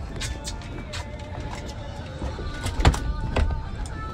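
Scattered clicks and knocks of a fish being handled on a boat deck, with one sharper thump just before three seconds in, over a low steady rumble.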